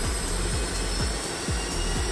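Rolls-Royce RB211 turbofan being dry-motored on its starter with no fuel: a steady whizzing whine with a low rumble as the spool turns.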